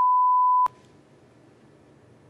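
TV censor bleep: a single steady high beep masking a swear word. It cuts off sharply under a second in, leaving faint room tone.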